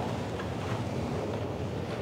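Steady rushing noise of subway platform ambience, even throughout with no distinct events.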